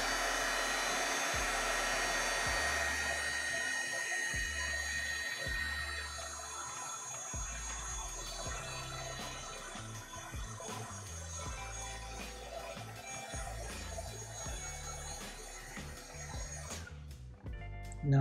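Heat gun blowing steadily while it shrinks heat-shrink tubing onto the end of a sleeved keyboard cable. A thin whistle in the airflow fades out about six seconds in, and the blowing grows gradually quieter, stopping shortly before the end.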